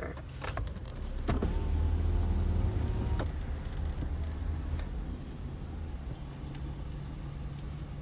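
Car's electric power window motor running for about two seconds as the driver's window goes down, stopping abruptly. A low steady hum continues underneath.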